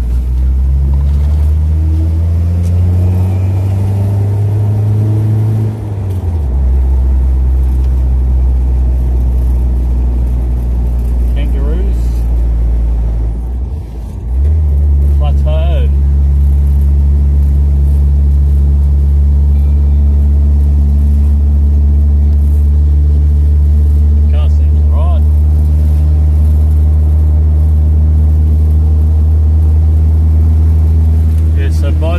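Car engine heard from inside the cabin while driving, a steady low drone. The engine note drops about six seconds in, and dips briefly near fourteen seconds before settling into a steady drone again, as with gear changes.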